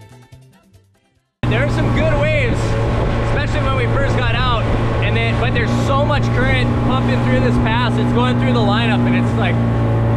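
Music fades out to a moment of silence, then about a second and a half in a small boat's outboard motor cuts in loud and steady at cruising speed, with the rush of wind and water under it.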